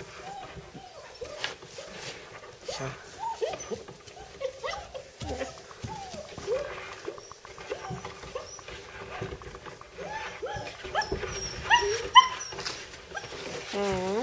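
White long-haired German shepherd puppy whining and whimpering in a string of short rising-and-falling calls, a few louder and higher-pitched ones near the end.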